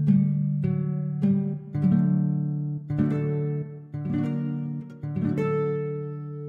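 Sampled harp guitar (Aviram Dayan Harp Guitar Kontakt library) played from a MIDI keyboard. A slow run of plucked notes, about half a second apart, sounds over deep bass strings that keep ringing. The last note, near the end, is left to ring out.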